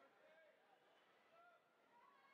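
Near silence, with faint distant voices heard across an indoor pool hall.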